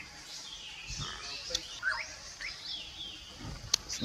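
Birds chirping and calling outdoors, short rising and falling calls throughout, with two sharp clicks, one about a second and a half in and one near the end.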